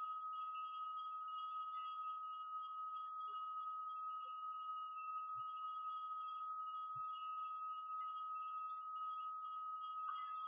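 A faint, steady high-pitched tone with fainter, higher tones above it, and a couple of very soft knocks.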